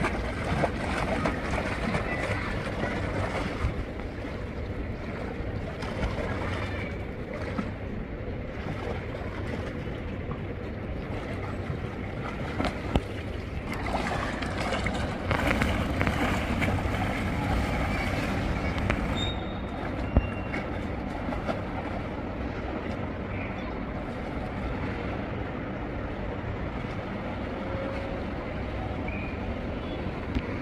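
Pool water splashing and sloshing as a swimmer swims a breaststroke drill, over a steady noisy background.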